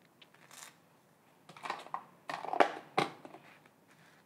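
Table knife scraping across a slice of toast, spreading butter: several short, dry scrapes.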